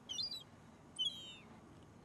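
Short, high-pitched bird calls: two brief calls about a second apart, the second sliding down in pitch, over faint outdoor background noise.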